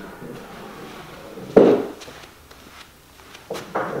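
A single sharp knock about one and a half seconds in, over quiet room noise.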